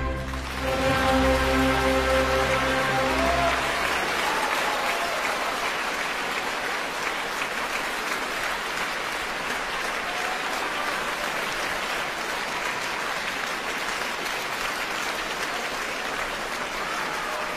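Large concert-hall audience applauding steadily. Under the first three or four seconds the orchestra's final chord is still sounding, then the applause goes on alone.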